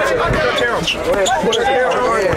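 Large crowd of spectators talking and calling out all at once, with a basketball dribbled on an outdoor asphalt court: a few low bounces, about half a second apart.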